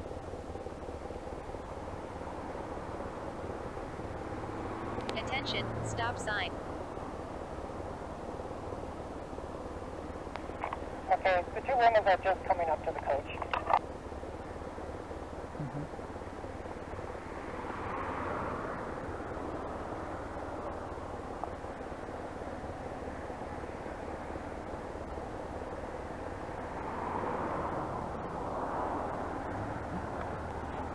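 BMW R1150RT-P police motorcycle's boxer-twin engine idling at a standstill. Two short bursts of a wavering voice come over it, the second one the loudest, and cars pass twice, near the middle and near the end.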